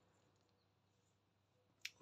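Near silence, with one short, sharp click near the end.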